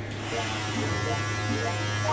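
Philips Multigroom Series 7000 (MG7720/15) electric hair trimmer running with a steady buzz as it cuts the hair at the back of the head.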